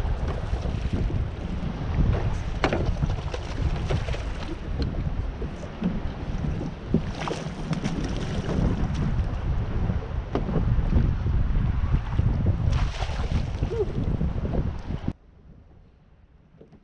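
Wind rumbling on the microphone over choppy water lapping at a small boat, with scattered sharp knocks and splashes while a bass is fought and netted. The rumble cuts off abruptly to much quieter about a second before the end.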